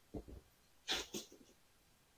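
Faint, brief handling noises from large whiteboards being moved and set down: a short bump just after the start, then a short rustle about a second in.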